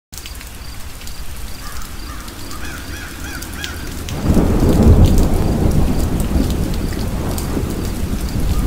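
Steady rain falling, with a roll of thunder that swells in a little after four seconds in and slowly dies away. Before the thunder, a bird calls several times.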